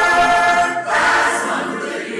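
Mixed choir singing a held chord, which changes to a new chord about a second in and then grows softer.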